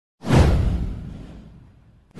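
Whoosh sound effect with a deep low boom underneath, hitting suddenly about a quarter second in. Its hiss sweeps downward in pitch as it fades away over about a second and a half.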